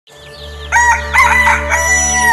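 A rooster crowing once, starting a little under a second in, over music that fades in from silence.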